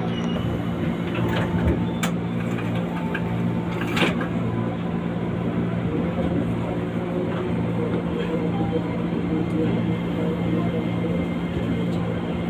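Steady hum inside an electric commuter train as it stands or creeps slowly at a station platform, with a couple of sharp clicks about two and four seconds in.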